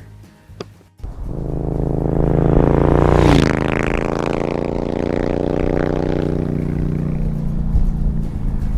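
Motorcycle engine starting up about a second in, its note rising to a peak near three seconds, then dropping and running steadily.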